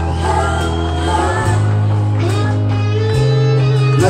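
Rock song performed live: a man singing over guitar and a steady bass line, the bass note stepping up about a second in and again near the end.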